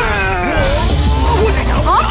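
Cartoon soundtrack: background music under a brief shout that falls in pitch near the start, with speech starting near the end.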